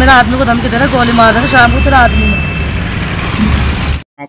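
A woman's voice speaking for about two seconds over steady street traffic noise, which goes on alone after she stops; the sound cuts off suddenly at the end.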